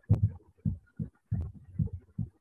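A run of irregular dull thumps, about six in two seconds, opening with a sharp click.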